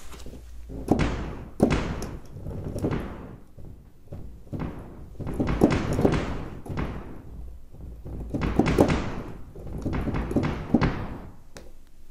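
Synthesized cinematic tom hits from a Backbone drum-resynthesizer patch, struck at varying velocities with a decaying tail after each: softer hits sound damped and darker, harder hits crisper and brighter as the velocity-controlled filter opens.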